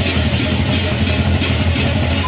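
Gendang beleq gamelan playing: many pairs of hand-held cymbals clashing in a dense, continuous wash, with a steady low rumble of the ensemble underneath.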